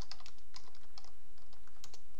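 Typing on a computer keyboard: a quick, uneven run of key clicks as a search term is entered, with a last couple of keystrokes near the end, over a steady low hum.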